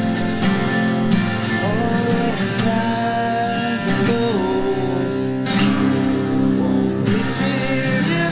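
Electric guitar and acoustic guitar playing a slow song together, with a man singing over them.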